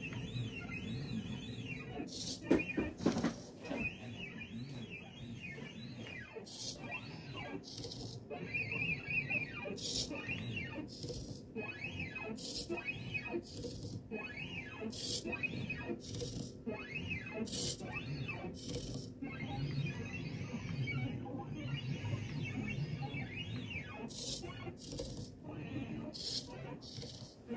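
Stepper motors of a DrawBot XI (AxiDraw-type) pen plotter whining as the pen carriage draws, the pitch rising and falling in short arches as the motors speed up and slow down on each stroke, over a steady low hum.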